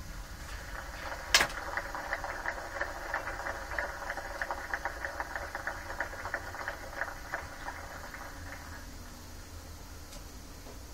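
Audience applause: a run of rapid, irregular claps that sounds thin and tinny, starting with a sharp click about a second in and dying away near the end.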